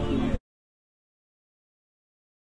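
The rumble of the MaxxForce coaster train rolling along the station track cuts off abruptly about half a second in. Complete silence follows: the audio drops out entirely.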